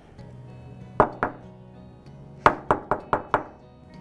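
A hammer strikes wire ear wires on a steel bench block, about seven blows with a metallic ring: two about a second in, then a quick run of five near the end. The wire is being flattened and work-hardened so it won't deform.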